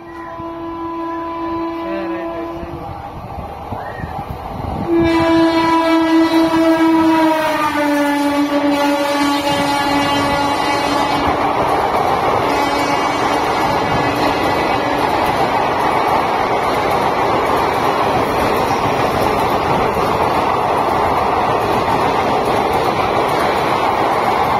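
An express train's passenger coaches run through a station at speed without stopping, their wheels on the rails making a steady running noise. A train horn sounds twice: a short blast at the start, then a longer, louder one from about five seconds in that drops in pitch partway and fades out.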